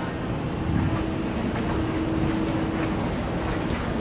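Steady background hum of a department store floor, a low rumbling noise with a faint steady tone held through most of it.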